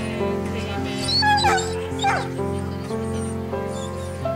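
Background music with steady held notes, with a dog giving short high whimpers over it. The whimpers slide in pitch about a second in, and one falls again about two seconds in.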